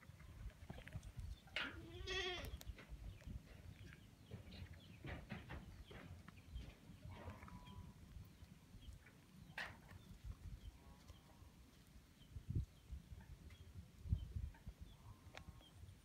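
A goat bleats once, a wavering call about two seconds in, followed by fainter calls around seven and eleven seconds, over a low rumble.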